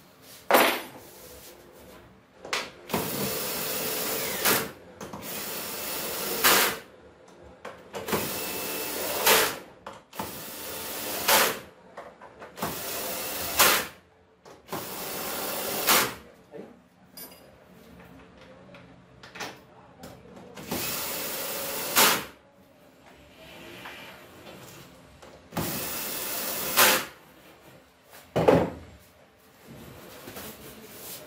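Cordless drill-driver running in about eight short bursts of one to two seconds each, driving screws to fasten together parts of a CNC machine's aluminium Z-axis frame. A few sharp knocks come near the start and near the end.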